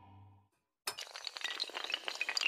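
A low sustained tone fades out in the first half second. After a brief silence, a sudden dense clatter of many small hard pieces clinking and tinkling starts just under a second in and carries on, like a cascade of toppling blocks.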